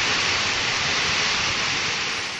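Heavy rain pouring down onto a wet paved street, a steady hiss.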